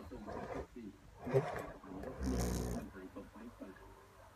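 A man's voice making wordless sounds, with a loud, rough, low growl-like vocal sound about two seconds in that lasts about half a second.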